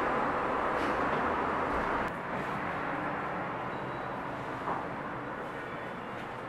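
Steady, even background noise, a mix of hiss and rumble with no distinct events, dropping slightly in level about two seconds in.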